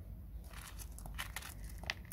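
Fingertips pressing and shifting porous lava-stone top dressing in a plastic cactus pot: faint, scattered crunching clicks starting about half a second in.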